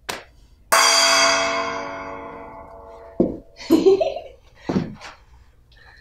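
A single gong strike about a second in, ringing with many overtones and dying away over about two seconds, marking the start of a bout. It is followed by a few short knocks and a brief vocal sound.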